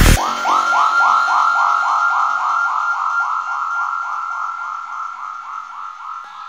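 Psytrance breakdown: the kick drum and bass cut out, leaving a repeating high synth figure of about four notes a second that slowly fades, close to a siren in sound.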